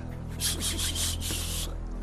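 A game show's low, steady background music drone. Over it, from about half a second in to near the end, comes a run of short hissing rubs: several quick pulses, then one longer one.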